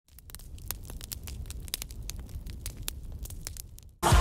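Fire sound effect: a low rumble with irregular crackles and pops, fading out just before the end.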